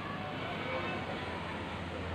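Steady hissing drone of a biofloc tank aeration system running, air blower hum with water bubbling and churning in the tanks.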